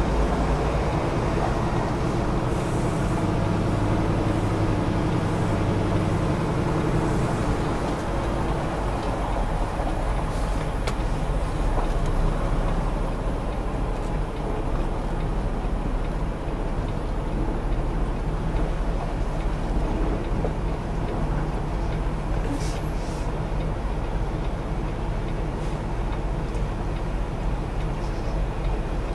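Semi truck's diesel engine running steadily, heard from inside the cab as the tractor-trailer backs at walking pace, with a deeper hum in the first several seconds that then eases.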